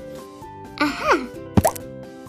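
Light background music with added cartoon sound effects: a short whooshing sweep with gliding tones about a second in, then a quick pop with a rising pitch just after it.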